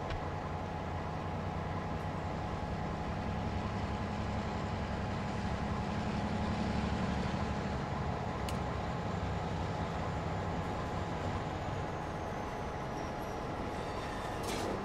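Freight cars being moved by a locomotive, a steady low rumble that swells about halfway through. A faint high whine slides down in pitch near the end, and there is a single sharp click about eight seconds in.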